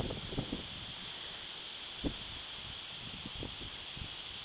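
Wind rumbling on a handheld camera's microphone, with a few soft thumps from footsteps on grass and leaf litter.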